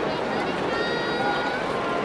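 Ballpark crowd chatter: many voices blending into a steady hubbub.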